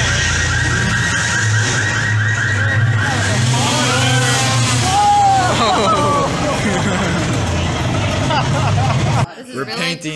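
Loud city street noise: a steady engine-like hum with people's voices calling out over it in the middle. It cuts off abruptly near the end.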